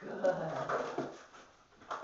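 A dog making a short whining sound while it noses the plastic scent box it has found, over a single spoken "Good"; a sharp tap near the end.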